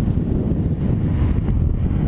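Steady wind rush over the microphone of a Yamaha R1 sport bike riding at highway speed, with the bike's running engine and road noise underneath.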